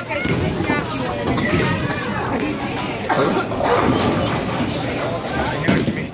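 Children and adults talking over one another in a busy bowling alley: a hubbub of overlapping voices.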